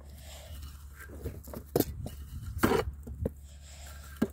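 Manure shovel scraping up horse droppings from grass and tipping them into a wheelbarrow: a handful of short scrapes and knocks, the longest about two and a half seconds in.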